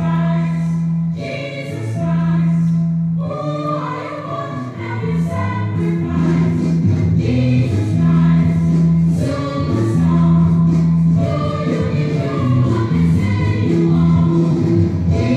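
A choir singing over instrumental backing music, with sustained bass notes underneath.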